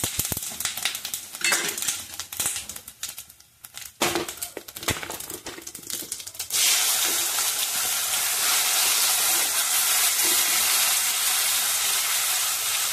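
Whole spices (cumin, mustard and fennel seeds) crackling and popping in hot ghee in a steel pot, with sharp clicks. About six and a half seconds in, a loud, steady sizzle starts suddenly as pieces of amla go into the hot fat.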